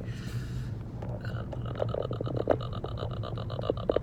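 Steady low drone of a Ford Focus ST's engine and road noise heard inside the cabin while driving. Over it there is a short hiss at the start, then a faint fast-pulsing higher tone and a few soft knocks.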